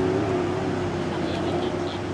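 A steady engine drone holding one pitch, with people's voices in the background.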